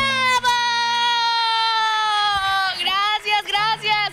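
A high voice holds one long shout that slides slightly down in pitch, then breaks into a string of short yelps, in the manner of a Mexican grito. The last low note of the dance music dies away in the first second and a half.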